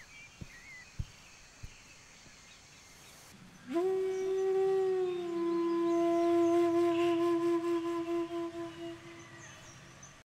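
Faint room ambience with a few soft knocks and small chirps, then, about four seconds in, a flute slides up into one long held note that wavers and fades out near the end.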